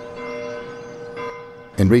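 A church bell ringing, its deep tone hanging steadily with a slight swell, before a narrator's voice comes in near the end.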